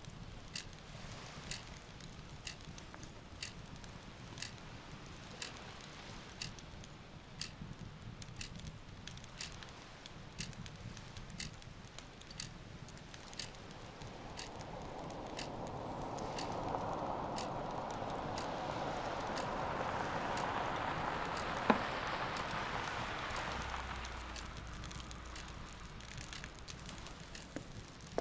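Steady soft ticking, about one tick a second, over a low hum. Past the halfway point a hissing swell builds, peaks with one sharp click, and fades near the end.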